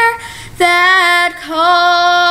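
A young girl's solo singing voice on a slow gospel song, holding long sustained notes: a note ends just after the start, a short breath, then two lower held notes.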